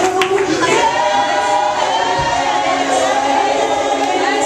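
Several voices of a church congregation singing together in worship, unaccompanied.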